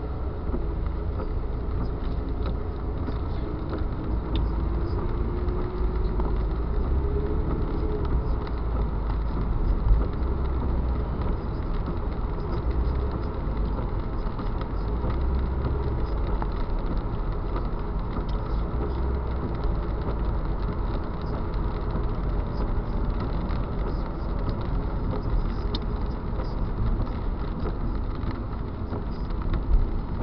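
Steady driving noise of a car moving through city traffic, picked up by a dashcam inside the cabin: low engine and road rumble with tyre noise from a wet road. The engine note rises slowly in the first few seconds. Two brief bumps come about ten seconds in and near the end.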